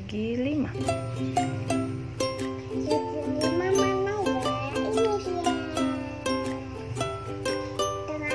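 Background music of briskly plucked strings, ukulele-like, with a young child's voice babbling over it now and then.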